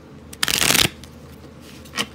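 Tarot cards being shuffled: one short burst of rapid card flutter lasting about half a second, followed by a light tap of the deck near the end.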